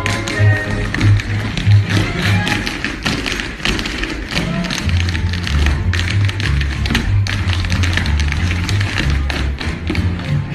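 A group of tap dancers' shoes striking a wooden stage in quick, dense rhythms over music with a bass line.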